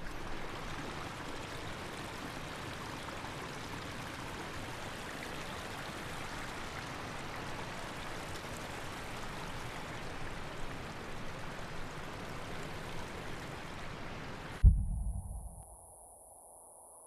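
River water rushing steadily, then near the end a sudden deep boom that dies away over about a second.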